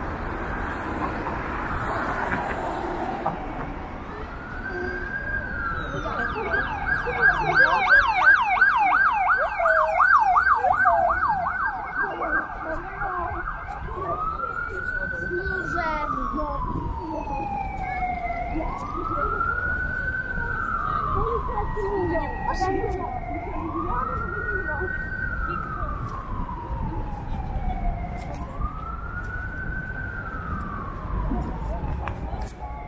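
Emergency vehicle siren over city street noise. It first climbs in pitch, then yelps fast for about seven seconds (the loudest part), then settles into a slow wail that rises quickly and falls slowly, about every four to five seconds.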